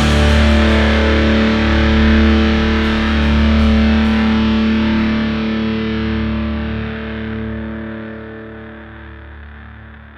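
The song's final chord on distorted electric guitar, left ringing and slowly fading away.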